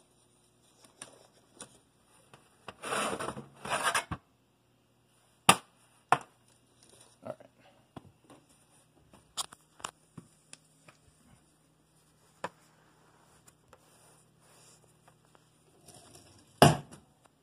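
Metal baking sheet with a wire cooling rack being handled and moved: two short scraping rustles a few seconds in, then several single sharp clicks and taps of metal.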